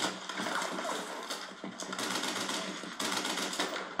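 War-film battle soundtrack: a dense, continuous stretch of rapid gunfire clatter from a night firefight.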